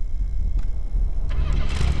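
A steady low rumble, with a rising whoosh swelling in the last half second.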